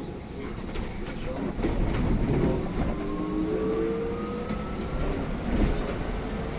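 Inside an electric city bus: low road rumble and light rattles, with the electric drive's whine rising slowly in pitch through the second half as the bus gathers speed.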